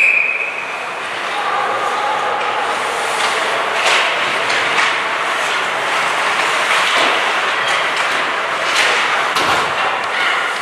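Ice hockey game in play in an indoor rink: a steady rush of skates on the ice, with scattered knocks of sticks and puck and voices shouting.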